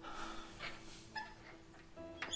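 A young boy softly whimpering and sniffling as he starts to cry, in a few short breaths, over a faint held music note that fades out about halfway.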